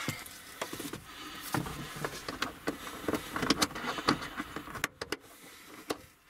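Rustling with scattered light knocks and clicks as someone shifts about inside a car's cargo area, brushing against the plastic trim.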